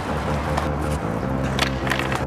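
Music playing over the rolling of a skateboard's wheels on pavement, with a few sharp clacks of the board; the loudest comes about one and a half seconds in.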